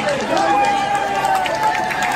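Outdoor crowd noise with one voice giving a long drawn-out shout, held from shortly after the start until about a second and a half in.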